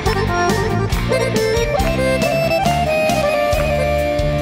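Live band playing the instrumental introduction of a Balkan folk-pop song, with accordion to the fore over a steady beat.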